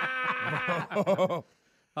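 Men laughing: one long, drawn-out laugh, then a quick run of short chuckles that stops abruptly about a second and a half in.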